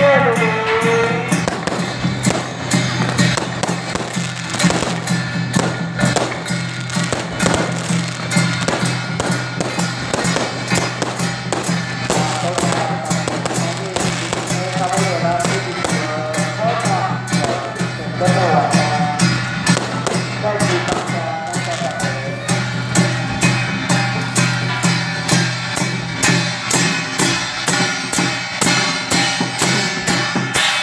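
Strings of firecrackers crackling in a dense, continuous run over loud festival music and crowd voices.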